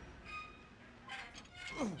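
A scraping, creaking squeal that falls steeply in pitch, coming in a little after a second in and growing louder.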